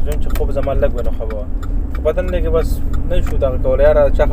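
A man's voice over the steady low rumble of a car being driven, heard from inside the cabin.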